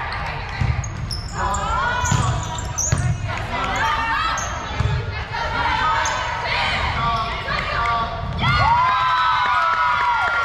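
Athletic shoes squeaking in short chirps on a hardwood gym floor during a volleyball rally, with dull thuds about once a second from footfalls and ball contacts. Voices call out over it in the echoing gym.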